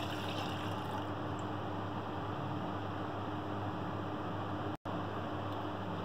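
Milk being poured from a glass into a nonstick saucepan, a steady pouring sound with one momentary break about five seconds in.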